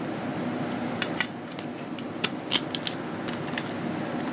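Plastic CD jewel case being handled and opened: a scatter of light clicks and taps from about a second in, over a steady background hum.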